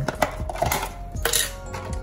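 Several sharp clicks and clinks, with a brief rustle a little past the middle, as a package of frozen chocolate-covered banana pieces is handled.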